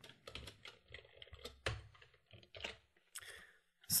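Computer keyboard keys tapped in an irregular run of quiet clicks while code is edited.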